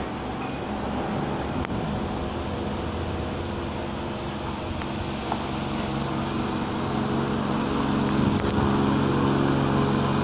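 Steady machine hum with several low tones, slowly growing louder toward the end, with a few faint clicks.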